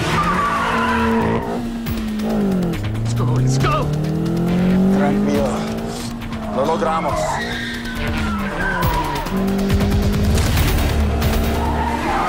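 Car engine revving hard, its pitch climbing and dropping several times as the car accelerates and brakes, with tires squealing and skidding on a cobbled street, mixed with a film score.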